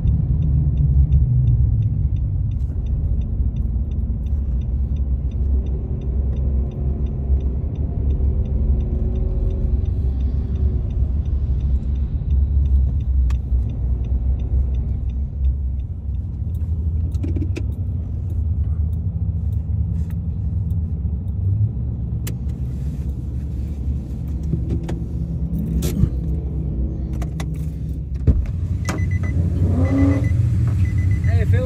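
Car driving on a wet road, heard from inside the cabin: a steady low engine and tyre rumble, with a faint regular ticking through the first half. In the last few seconds come scattered clicks and a short rising engine note.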